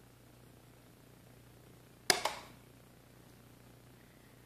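Pulse arc jewelry welder firing one weld pulse at full power: a single sharp crack about two seconds in with a short sizzling tail, as the tungsten electrode arcs onto an 18-gauge stainless steel ring. A faint steady hum runs underneath.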